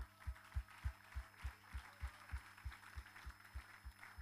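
Handheld microphone picking up a steady run of dull low thumps, about three a second, as the hands holding it clap.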